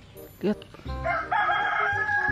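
A rooster crowing once: one long, loud call starting about a second in.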